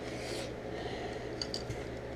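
Quiet room tone with a steady low hum, a soft breath-like rustle just after the start, and a few faint light clicks about one and a half seconds in as plastic Lego figure parts are handled and fitted together.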